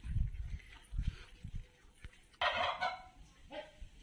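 Domestic turkey tom gobbling: one loud rattling gobble about two and a half seconds in, then a shorter call a moment later. Low bumps on the microphone in the first second and a half.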